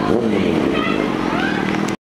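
A car passing and accelerating on the street, mixed with people's voices nearby; the sound cuts off abruptly just before the end.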